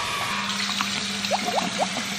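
Water running into a bathroom sink and splashing as cupped hands lift it to the face.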